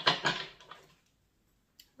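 A deck of tarot cards shuffled in the hands: a brief papery rustle and flutter of cards in the first half-second, fading out, then quiet with one faint click near the end.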